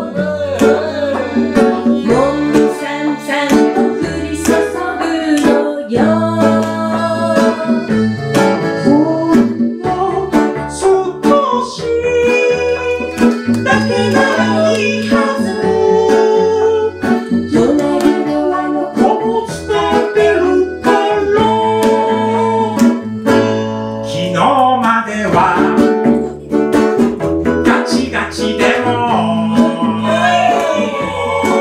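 A live acoustic band playing a song with sung vocals: strummed ukulele and acoustic guitars, accordion and a drum kit keeping a steady beat.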